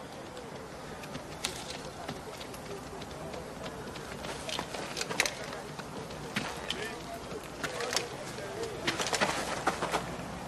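Faint film-soundtrack ambience of an outdoor crowd scene: low murmuring voices under a steady background hiss, with scattered sharp clicks and knocks that grow more frequent in the second half.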